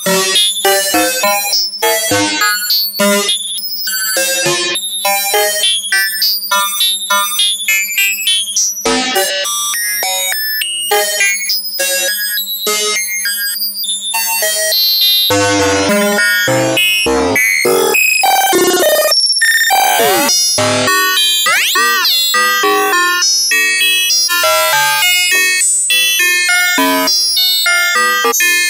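Eurorack modular synth: a ring-modulated signal fed through the Synthrotek FOLD wave folder, playing a fast run of short, overtone-rich pitched notes, with sweeping pitch glides about halfway through and a steady low drone underneath. The tone shifts as an envelope moves the folder's level and control voltage modulates an oscillator.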